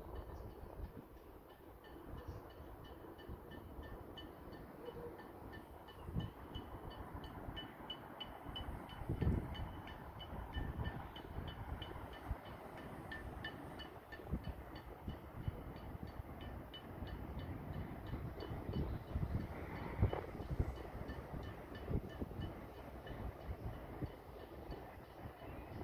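A bell rung in a quick, steady rhythm in the distance, over faint neighbourhood clapping during the weekly clap for carers. Occasional low thumps and rumble sound on the microphone.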